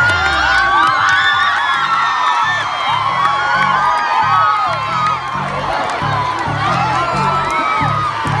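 A large crowd cheering, shouting and whooping. About two and a half seconds in, music with a steady low beat comes in under the cheering.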